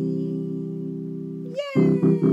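Electronic keyboard holding a sustained chord that slowly fades, the closing chord of a children's song. Near the end a voice glides down in pitch as short, repeated keyboard chords start.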